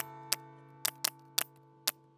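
A nail gun firing six times in quick succession, driving galvanized nails through plywood siding panels, each shot a short sharp snap, over guitar music.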